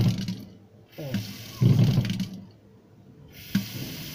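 Single-lever kitchen mixer tap being opened and closed several times: water gushes out in bursts, and each opening brings a low rumbling noise from the tap. The noise is a sign that the mixer or its cartridge may be faulty.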